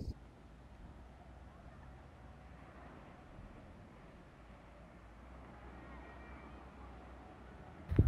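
Faint outdoor ambience: a steady low rumble with a light hiss, and no distinct events.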